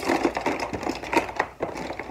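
Strands of mini Christmas lights being spread out by hand inside a clear plastic storage bin: irregular clicks and rattles of the small bulbs and wire against the bin's plastic floor.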